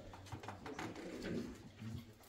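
Faint rustling of hymnal pages being turned in quick flicks, with a low murmur around the middle.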